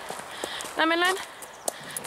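A horse's hooves knocking on a packed-dirt yard: a couple of single sharp steps, the clearest near the end.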